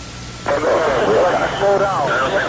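A man's voice, unclear, coming over a field radio with constant hiss and a low hum. The voice drops out for about half a second at the start, leaving only the hiss, then comes back.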